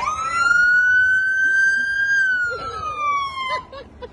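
Police vehicle siren giving one long wail: the pitch rises quickly, holds about two seconds, then glides back down before cutting off near the end, where short blips start again.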